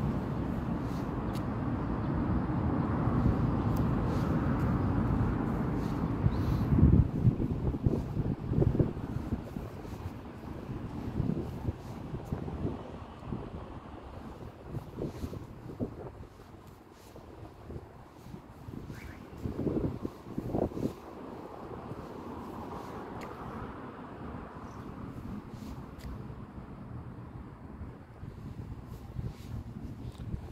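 Wind buffeting the microphone in irregular low gusts, over a steady low outdoor rumble that is loudest in the first six seconds or so.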